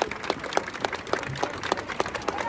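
Football supporters applauding, with sharp hand claps close by at about three to four a second over the wider clapping of the crowd.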